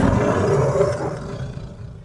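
A movie-monster roar sound effect for a giant lizard, one long roar that is loudest at the start and fades away over about two seconds.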